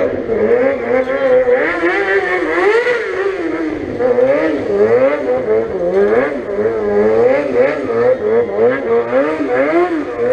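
Racing car engine revving, its pitch rising and falling over and over as the throttle is worked, heard at a distance.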